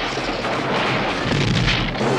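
Cartoon crash sound effect: a long, rumbling, explosion-like crash of a giant creature slamming into a totem pole and ice, swelling again in the second half.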